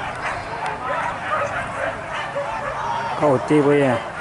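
Several hunting dogs yelping and barking in quick, overlapping short cries. A louder, drawn-out cry about three seconds in stands above them.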